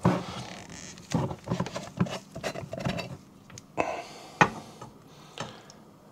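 Light, scattered clicks and knocks from a glass mason jar and its metal screw lid being handled and opened, with one sharper click a little past the middle.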